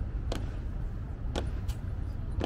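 Honour guards' boots striking stone paving in a slow goose-step march: two sharp strikes about a second apart, over a steady low rumble.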